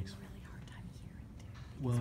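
Only speech: soft, low talk and whispering, with a louder voice starting up near the end.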